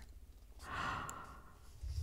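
A woman's soft sigh: one breathy exhale starting about half a second in and lasting about a second.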